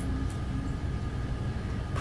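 Steady low hum with a few faint steady tones above it, and no distinct knocks or clicks.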